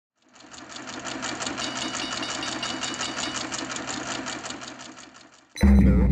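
Logo-intro sound effect: a rapid, even, machine-like ticking that fades in and runs steadily, then cuts off into a sudden, loud, deep boom near the end.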